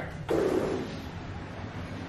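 A sliding glass balcony door being slid open, with a brief noisy whoosh about a quarter second in. It is followed by a steady outdoor wash of wind and distant surf.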